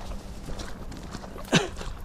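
Footsteps walking through tall grass and weeds on a dirt path, with vegetation brushing, and one short, sharp sound that falls in pitch about one and a half seconds in.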